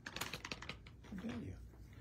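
Light, quick clicks and taps of small product packaging being handled on a tabletop: a cardboard glue box and plastic-sleeved packets, busiest in the first second.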